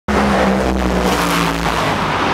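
An engine running steadily nearby, with a loud low drone that drops slightly in pitch about a second in, over general racetrack pit noise.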